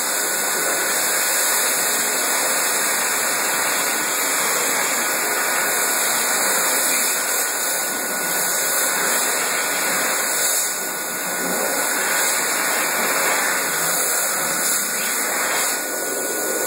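Dyson Airblade hand dryer running with hands in its air slot: a steady rush of blown air with a thin, steady high whine.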